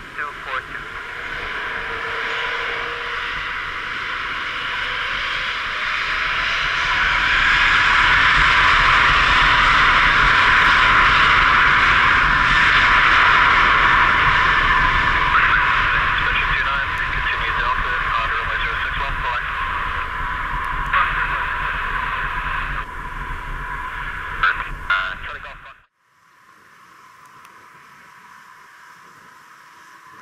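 Airbus A380-861's four Engine Alliance GP7200 turbofan engines at takeoff thrust on the takeoff roll. The loud, steady jet noise builds over the first few seconds, is loudest around the middle and eases a little after that. Near the end it cuts off abruptly to a much quieter, distant engine sound.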